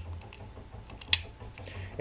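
A few separate sharp plastic clicks from the hand-crank handle of a ThorFire camping lantern being handled and snapped back into its recess, the loudest about a second in.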